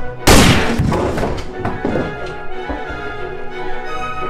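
A single loud gunshot bang about a third of a second in, fading over about a second, over steady background music.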